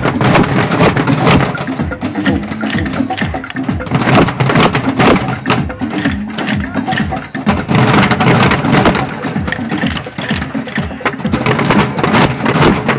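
A group of children beating plastic barrel drums with sticks, a dense, uneven clatter of many hits that goes on without a break.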